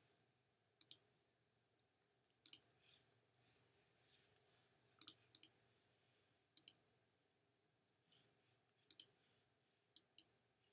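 Faint computer mouse clicks, scattered every second or two and several in quick pairs, over a quiet room.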